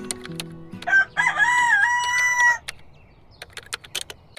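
A rooster crowing once, a single cock-a-doodle-doo about a second in that lasts about a second and a half. A scatter of short clicks comes before and after it, and a few low music notes fade out at the start.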